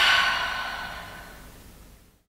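A person's long, breathy sigh. It starts suddenly and loudly and fades away over about two seconds.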